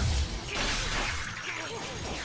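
Sound effects from the anime's fight scene: a crash with shattering debris and a low rumble, loudest at the start and easing off into a noisy haze.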